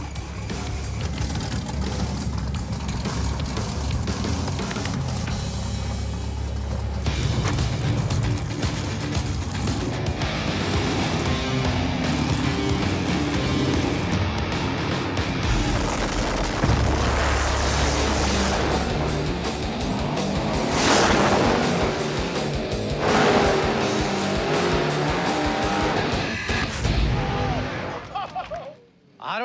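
Music score laid over a street drag race, with the race cars' engines heard under it, one of them a Chevrolet Nova drag car. The engine sound is heavy and continuous, and it surges loudest about three quarters of the way through as the cars launch and run off down the street.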